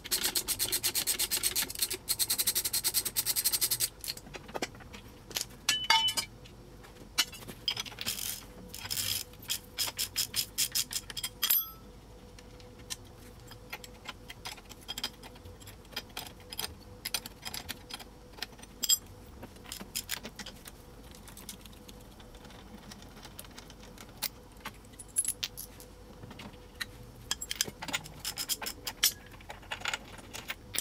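Ratcheting wrench clicking in a fast run for the first few seconds as a nut on the hot rod's front axle steering hardware is spun off, followed by scattered metal clinks and knocks of bolts, linkage parts and tools being handled.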